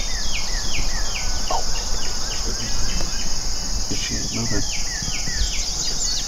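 A steady, high-pitched chorus of insects buzzing in the field, with a bird calling over it in quick runs of falling notes, a few per second, that pause for a moment around the middle. A low rumble of wind on the microphone lies underneath.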